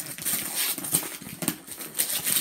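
Cardboard toy packaging being torn and pulled open by hand: uneven rustling and crinkling with a few sharp snaps.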